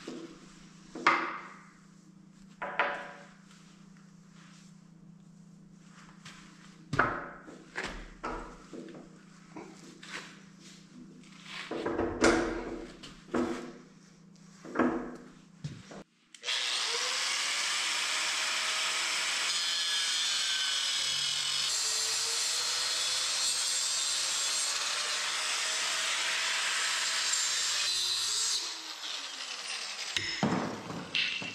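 Steel parts of an excavator thumb knocked and clanked by hand for the first half. Then a handheld angle grinder grinds the steel bucket linkage for about twelve seconds, its pitch wavering under load, and winds down near the end.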